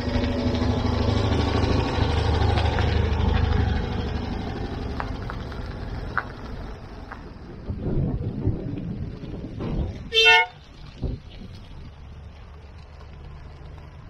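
A car engine running as a car drives along the car-park lane for the first few seconds, then a car horn gives one short toot about ten seconds in.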